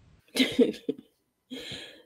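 A woman coughs: one short cough about half a second in, followed by a couple of smaller ones.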